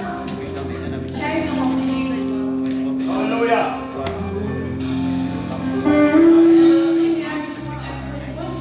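Live worship band music with long held chords and electric guitar, and a voice over it.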